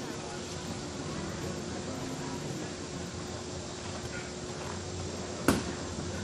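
Faint, indistinct voices over a steady background hum, with one sharp knock near the end.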